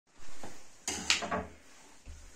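A short clatter of knocks and scraping about a second in, over a low hum.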